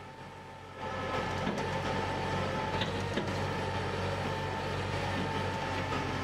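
Tractor engine running steadily with a faint whine while its front-loader bucket tips out chopped silage; the machine sound comes in about a second in.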